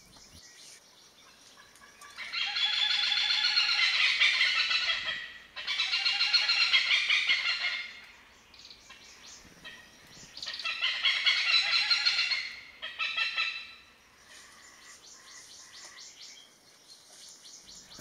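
Oriental pied hornbill calling loudly: three bouts of rapid, repeated notes of two to three seconds each, with a short burst after the third.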